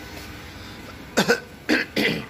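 A man coughing close to the microphone: a few short coughs in quick succession, beginning a little after a second in.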